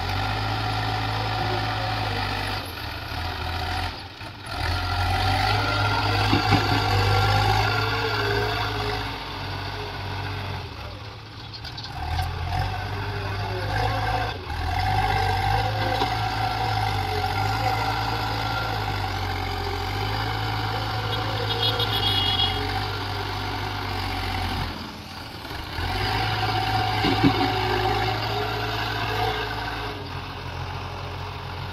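Bull backhoe loader's diesel engine working as the front bucket pushes and lifts soil. The engine note swells and sags with the load and drops off briefly three times.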